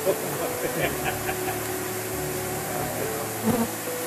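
Flies buzzing around an elephant carcass: a steady drone whose pitch shifts now and then as the flies move.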